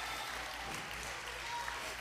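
Faint, steady applause from a church congregation.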